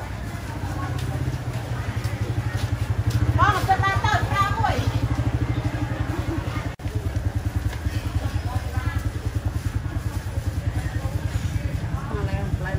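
Small motorbike engine running steadily close by, with a brief break a little past halfway.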